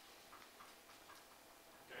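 Near silence: room tone with a few faint, short ticks, ending on a spoken "Okay?"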